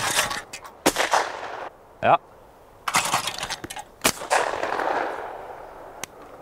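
Shotgun fired several times at clay targets: sharp reports, each trailing off in an echo across open ground.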